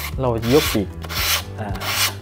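Sandpaper rubbing along the edge of a foam glider wing panel in two short strokes, about a second in and near the end. The edge is being sanded to a bevel so the raised wing tip will sit flush against the joint for gluing.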